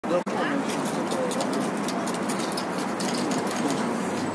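Busy pedestrian street ambience: a steady hubbub of passers-by's voices and city noise, with no trombone or guitar playing. A short bump and cut-out in the first split second.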